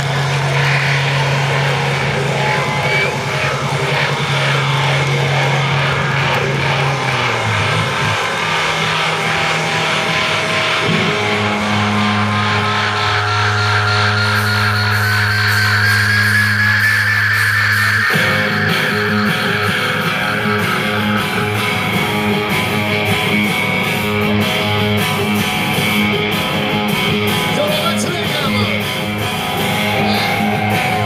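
A live hard rock band playing loud through a festival PA, heard from the crowd: distorted electric guitars, bass guitar and drums, with held low notes that change every few seconds and a slow rising sweep midway.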